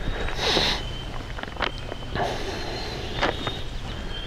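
Quiet handling noises: a brief rustle about half a second in and a few faint clicks, over a faint steady high tone.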